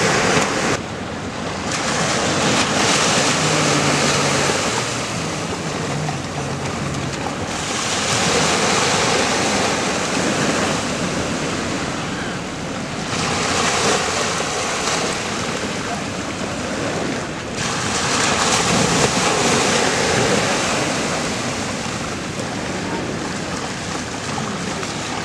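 Small sea waves breaking and washing up a sandy shore, swelling and easing in long surges every five seconds or so.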